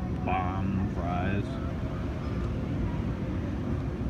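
Outdoor street ambience: a few seconds of background voices near the start over a steady low rumble, as from a nearby engine or machinery.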